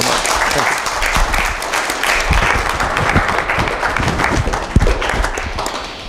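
Audience applauding: a dense patter of many hands clapping, tapering off near the end.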